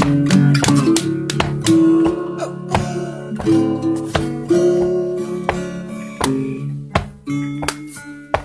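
Acoustic guitar strumming chords in an instrumental passage of a live psychedelic garage rock song, without vocals.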